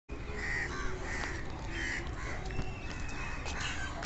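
An animal calling in short repeated cries, about five in the first two and a half seconds, over a steady low rumble. A thin, steady, high whistle-like tone follows for about a second near the end.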